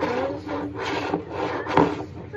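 Repeated rubbing and scraping noises from a small bottle being handled and turned against a tabletop.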